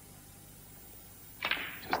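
A low hush, then about a second and a half in a sharp click of snooker balls as a shot is played.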